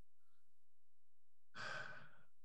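Near silence for about a second and a half, then a man's audible breath, lasting under a second, near the end.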